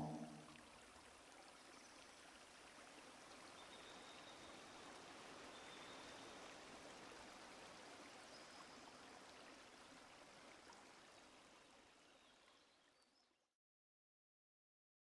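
Near silence: a faint, even hiss that cuts out to dead silence near the end.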